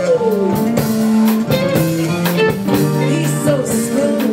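A woman singing with a live band of guitar and drum kit; a long held note slides down in pitch in the first half second, over sustained instrument notes and a steady drum beat.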